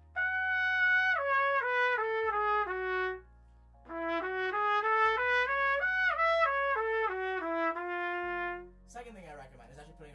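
Trumpet playing two short stepwise phrases, separated by a brief pause: the first starts on the high G sharp and steps down, and the second climbs back up to the top note and comes down again. This is slow practice of an ascending lick, starting from the top note and working down.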